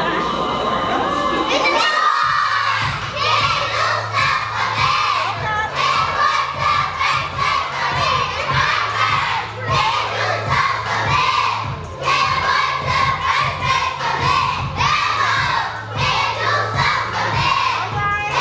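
A crowd of young children shouting and singing along loudly to a song with a steady beat, which starts about two seconds in.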